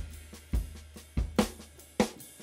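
Recorded drum kit playing back from a mix session: separate kick drum hits with snare and cymbal or hi-hat strokes, about five hits in two seconds.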